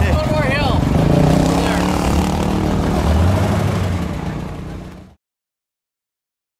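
Chevrolet K5 Blazer's engine running at low speed, a steady low rumble with people's voices over it in the first second. The sound fades and cuts off to silence about five seconds in.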